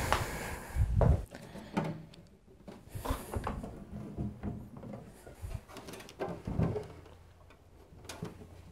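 Heavy desktop PC tower cases being shifted and set down on a shelf: several dull thumps and knocks, the loudest about a second in, with scraping between them. Near the end a low steady hum sets in.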